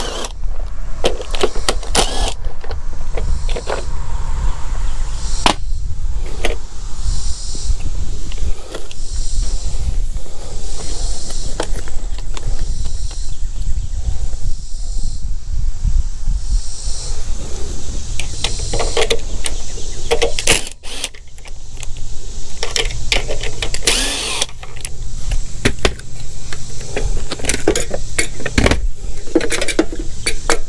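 Cordless power driver run in short spurts to back bolts out of a small engine's plastic air-filter cover and shroud, with clicks and clatter of the tool and plastic parts being handled, over a steady low rumble.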